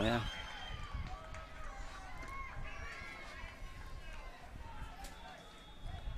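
Faint ambience of an outdoor soccer match: distant voices calling and chattering over a low steady rumble.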